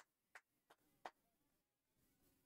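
Near silence broken by four faint, sharp clicks about a third of a second apart in the first second.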